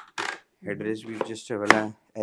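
A sharp click, the loudest sound here, about three-quarters of the way through, from the adjustable fittings of a mesh ergonomic office chair as its headrest is handled, after short rustling from the chair being gripped.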